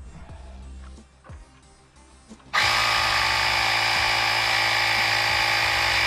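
Small cordless battery-powered Carsun air compressor switching on about two and a half seconds in and running loud and steady, pumping up a bicycle tyre.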